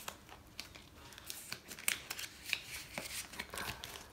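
Paper sticker sheets and planner pages being handled and turned: light rustling with an irregular scatter of small clicks and taps.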